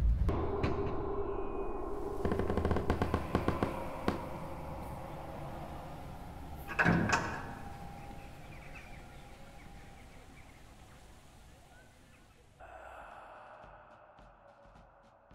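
Heavy wooden doors rattling and knocking in quick succession for a couple of seconds, then a single deep thud about seven seconds in that rings away into a slowly fading drone. Faint music comes in near the end.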